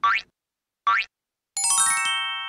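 Two quick rising cartoon boing sweeps, about a second apart, then a bright shimmering chime chord that rings on and slowly fades: the sound-effect cue for a character popping out of hiding.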